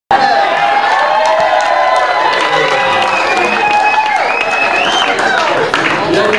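Small club audience applauding and cheering, with voices calling out over the clapping.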